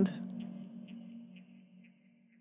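A synthesizer sound from a techno track playing back: a steady low tone with a faint, constantly modulated upper layer, fading out over the two seconds.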